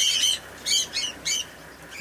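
Small birds calling: four quick bursts of short, high, scratchy calls, ending about three-quarters of the way through.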